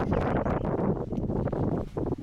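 Wind buffeting the microphone: a rough, fluctuating rumble, dipping briefly near the end.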